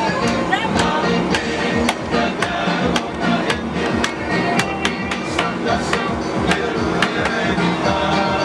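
Lively music with a steady beat of sharp percussive hits and a sustained melodic line.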